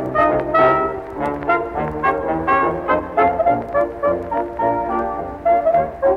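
A 1920s dance orchestra plays an instrumental passage led by brass, with a steady dance beat. The early recording has little treble.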